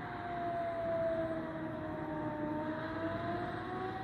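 Civil-defence air-raid siren wailing in the distance, its long tone falling slowly in pitch and then rising again, with a second siren tone gliding upward alongside it.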